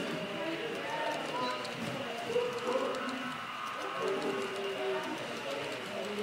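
Indistinct conversation of people in the room, over the light clicking of an HO scale freight train's wheels rolling over the track.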